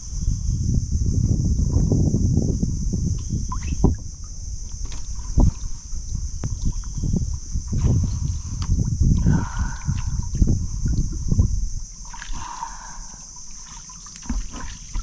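Water sloshing and lapping close to the microphone at the waterline of a mangrove lagoon, with irregular low knocks and rumble and a steady high hiss behind it.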